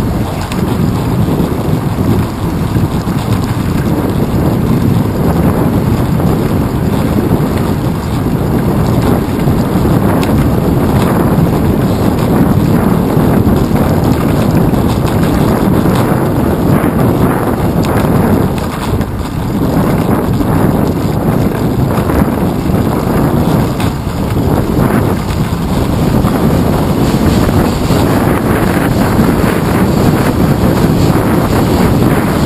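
Wind buffeting the microphone of a handlebar-mounted GoPro Hero 2 on a moving bicycle: a loud, steady low rumble, easing briefly twice in the second half.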